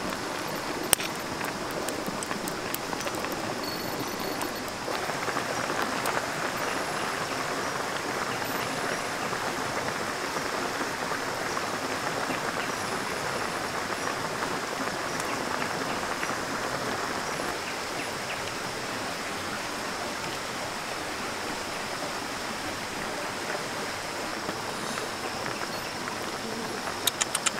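Spicy fish and mushroom curry boiling in a wok over a wood fire: a steady bubbling hiss that grows denser a few seconds in, with a single sharp snap about a second in.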